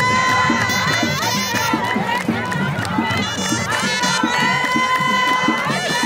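Music of wind instruments holding long high notes over a quick, steady drumbeat, with a crowd cheering.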